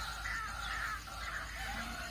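Faint crows cawing in the background, a few short repeated calls.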